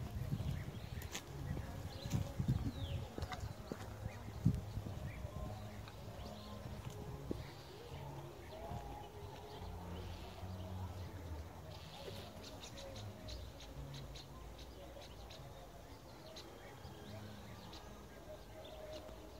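Scattered bird calls from crows harassing a perched owl. In the first few seconds there is uneven rumbling on the phone's microphone.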